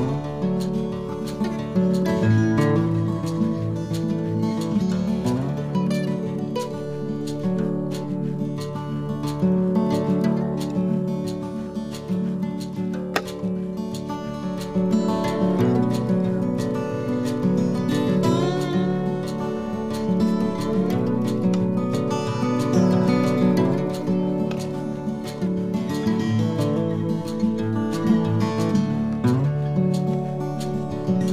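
Background instrumental music led by acoustic guitar, plucked and strummed at a steady level.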